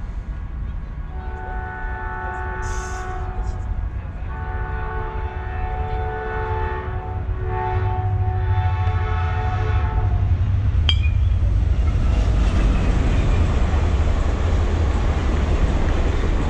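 A multi-tone horn sounds three long blasts with short breaks, while a deep rumble builds and grows louder. A single sharp crack comes about eleven seconds in.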